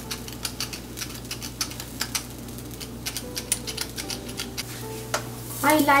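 Stainless steel pepper mill being twisted to grind black pepper: a run of quick, irregular clicks.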